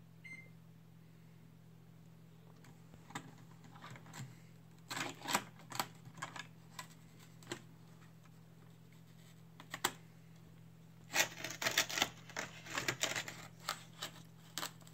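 Toy cars pushed over ice in a metal baking tray: irregular bursts of scraping and clicking, one cluster about five seconds in and a longer run about eleven seconds in.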